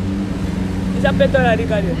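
A car driving past on the street, its low engine hum fading out about a second and a half in, with a voice talking over it in the second half.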